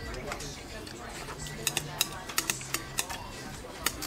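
A soup spoon clinking against a large glass bowl of pho, about eight sharp clinks in the second half as noodles are stirred and scooped.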